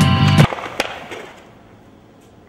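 Music with a steady beat cuts off about half a second in. Then a skateboard hits the concrete once with a sharp clack, a bailed trick that leaves the board lying upside down.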